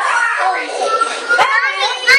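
Young children's voices and chatter, several at once, with higher calls in the second half.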